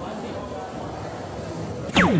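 Crowd chatter in a large hall, then near the end a dart hits the electronic soft-tip dartboard and the machine answers with its hit sound: a sharp strike followed by a quickly falling electronic tone, registering the hit.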